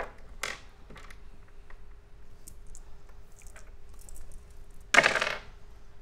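Gaming dice rattled in a hand and rolled onto a wooden table, making scattered small clicks, with one short, loud noisy burst about five seconds in.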